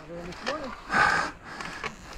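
Mountain biker's hard breathing with short grunts, a sharp loud exhale about a second in, as he rides into a rut on a rough trail.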